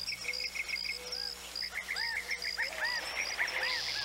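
Chirping insects in a steady chorus of rapid, evenly spaced pulses, with a run of short calls, each rising and falling in pitch, through the middle.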